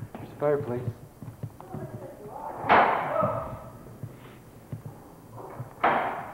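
A loud bang about halfway through that dies away over half a second, with short bursts of voices around it.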